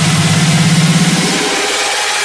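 Electronic dance music in a breakdown: a held, buzzing synth bass note under a wash of hiss-like noise, with no kick drum. The bass note fades out about three-quarters of the way through.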